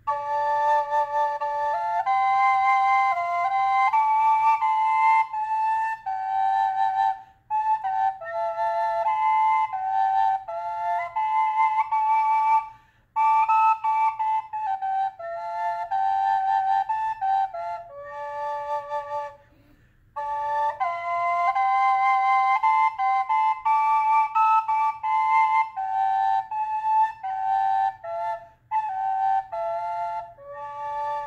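Small, high-pitched Native American fifth drone flute in high A and high D, both chambers sounding together: one note held as a drone while the other plays a slow melody. It is played in phrases, with short breath breaks about 7, 13 and 19 seconds in.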